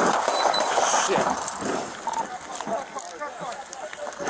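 Body-camera audio cutting in abruptly from dead silence: a loud burst of rustling movement noise on the microphone for about the first second, then indistinct shouted voices of officers.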